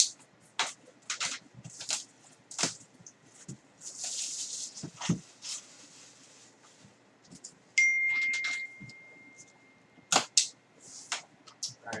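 Plastic shrink wrap being crinkled and torn off a cardboard box, with scattered sharp clicks and a stretch of crackling about four to five seconds in. A single high-pitched ding rings out about eight seconds in and fades over a couple of seconds.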